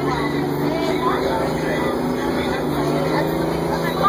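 Crown Supercoach Series 2 bus engine running steadily as the bus drives, heard from inside the passenger cabin, with voices faint in the background.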